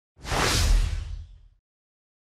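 Whoosh sound effect with a deep low boom, rising about a fifth of a second in and fading out by about a second and a half. It is an editing transition effect marking the appearance of an animated section title.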